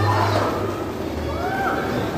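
Skateboard wheels rolling on concrete, dying away about half a second in. From about a second in, a person lets out a drawn-out yell that rises and then falls in pitch.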